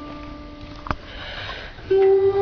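A singer's short breath drawn in between two sung phrases of a guqin song. A held note fades away, a sharp click comes a little before halfway, then the soft inhale, and the next loud sung note begins right at the end.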